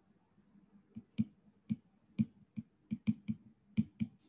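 Stylus tip clicking on a tablet's glass screen during handwriting: about nine sharp, irregularly spaced clicks starting about a second in.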